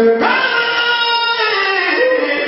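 Church congregation singing together. The voices hold long notes and move to a new note a moment after the start and again near the end.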